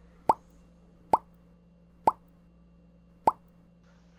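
Four short pop sound effects about a second apart, each a click with a brief upward-bending tone, as added in video editing.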